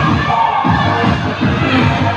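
Loud dance music playing, with a group of dancers shouting and cheering over it.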